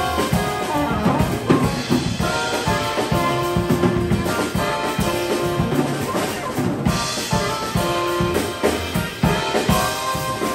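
A live jazz-funk band playing: a straight soprano saxophone carries the melody over electric keyboard and upright bass, with a busy drum kit driving it.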